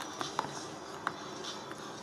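Hands handling a small cardboard presentation box and its packaging: a few faint, short clicks and rustles, the loudest about a second in.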